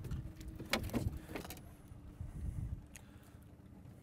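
Low wind rumble on the microphone, with a few light knocks and clicks, several about a second in and one near three seconds, as a northern pike is handled in a boat.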